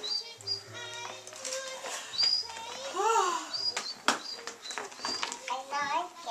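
Clear plastic packaging rustling and crinkling as a boxed pop-up toy tunnel is handled, in irregular crackles with the sharpest one about four seconds in. Repeated short high chirps and music play underneath.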